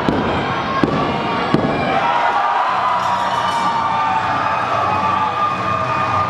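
Three sharp slaps on the wrestling ring mat, about three-quarters of a second apart, in the rhythm of a referee's pin count, over live crowd noise. After about two seconds the crowd's noise turns into sustained yelling with a held, pitched cry.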